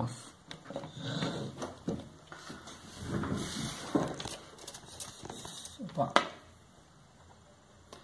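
Light handling noises on a workbench: scattered knocks and rustles as a clamp meter is picked up and moved away, with one sharper knock about six seconds in.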